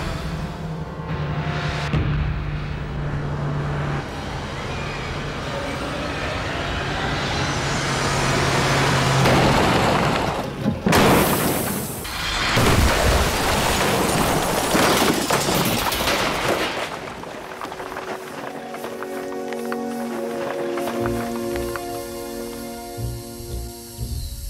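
A car crashing at speed through a series of brick walls about ten seconds in, with several seconds of heavy impacts and bricks tumbling. Background music builds up before the crash and continues after it.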